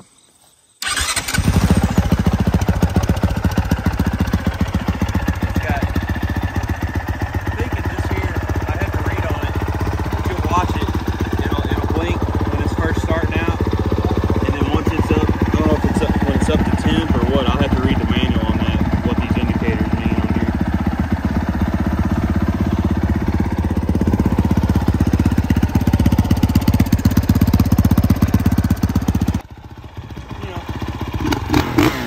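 2023 Honda CRF450R 50th Anniversary's single-cylinder four-stroke engine starting about a second in from cold and then idling steadily with a fast run of firing pulses, on a brand-new bike. The sound cuts off sharply about a second before the end.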